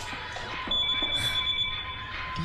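Steady high-pitched electronic tones, several held at once over a faint hiss; the highest tones drop out briefly and come back under a second in.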